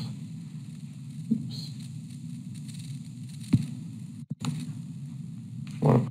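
A steady low hum with two faint clicks, about a second in and midway; the sound cuts out for a moment about four seconds in.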